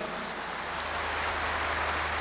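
Audience applauding: a steady, even patter of many hands clapping, with a low hum underneath.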